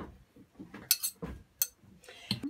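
Dishes and cutlery being handled: a sharp light clink about a second in, a soft knock just after, and another small click near the end.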